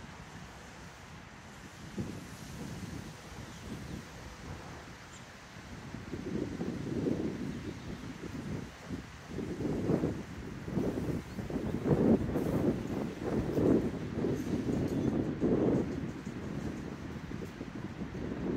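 Wind buffeting the microphone in uneven gusts, quiet at first, then picking up about a third of the way in and at its strongest in the second half.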